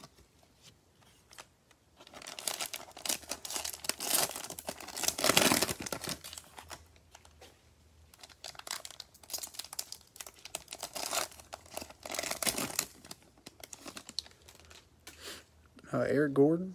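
Cellophane wrapper of a trading-card cello pack being torn open and crinkled, a run of crackling that starts about two seconds in, is loudest around the fifth second and thins out near the end.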